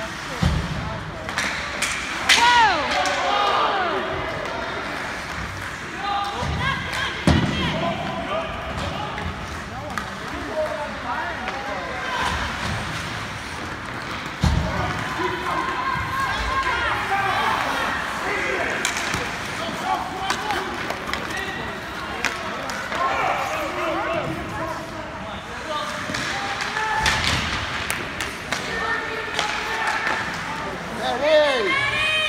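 Ice hockey play in a rink: indistinct shouts and calls, broken by occasional sharp knocks and thuds from pucks, sticks and players hitting the boards and ice.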